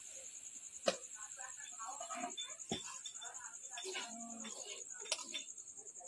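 A steel spoon stirring and scraping in a metal wok, with three sharp clinks at about one, three and five seconds in. Faint talk runs underneath.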